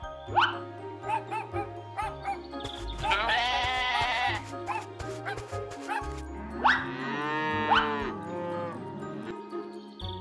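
Cartoon background music with two farm-animal sound effects over it: a higher, wavering bleat about three seconds in and a lower, longer moo near seven seconds.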